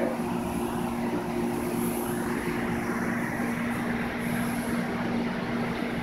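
Inside a LYNX light rail car running along the track: a steady hum with two held low tones over even rolling noise.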